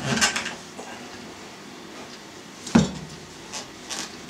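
A knife worked down through a hard, waxed wheel of cheddar, with a brief scraping at first. Then comes one sharp knock on the cutting board, the loudest sound, about three quarters of the way through.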